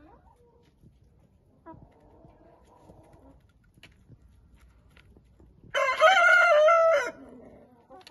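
Domestic rooster crowing once, loud and close, about six seconds in, lasting a little over a second. A fainter, more distant crow about two seconds in, with hens clucking quietly in between.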